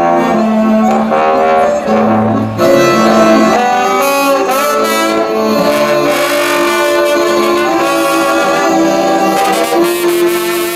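A live acoustic trio playing together: chromatic accordion, bowed cello and a low brass line, in sustained melodic notes. The sound fills out and brightens about two and a half seconds in.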